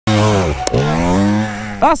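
Dirt bike engine running loudly on a bike lying on its side after a tip-over, its revs dipping and then rising again, with a sharp knock about two-thirds of a second in.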